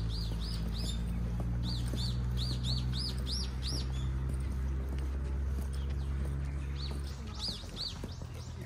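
A small songbird chirping in quick runs of short, high rising-and-falling notes, about two or three a second, with a pause in the middle and a second run near the end. Under it a steady low hum runs throughout and drops a little about seven seconds in.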